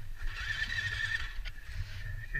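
Enduro dirt bike engine running low at idle, with a faint wavering high-pitched note over it from about half a second in to past the middle.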